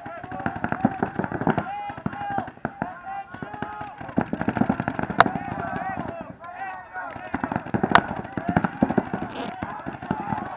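Paintball markers firing in rapid strings of pops, with two louder sharp cracks about five and eight seconds in. Voices shout over the shooting.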